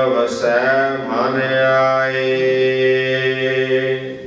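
A man's voice chanting a line of Gurbani scripture in the melodic Hukamnama recitation style, the syllable stretched into a long held note that fades away near the end.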